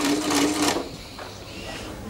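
Electronic cash register printing a receipt: a steady mechanical buzz from its printer lasting about a second, then stopping.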